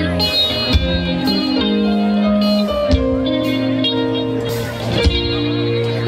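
Live rock band playing an instrumental intro: electric guitar and keyboard holding sustained notes that change every second or so, with a few cymbal or drum hits.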